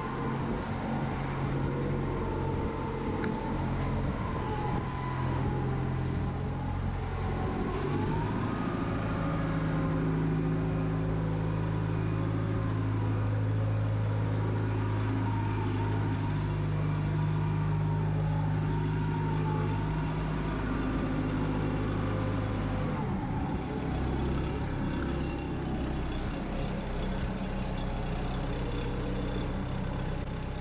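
MacLean bolter's diesel engine running as the machine trams underground. It picks up in speed about eight seconds in, then eases back to a lower, steadier run around twenty-three seconds.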